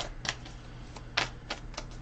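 Tarot cards being handled: a handful of short, sharp clicks and taps at irregular intervals as the cards are snapped and tapped.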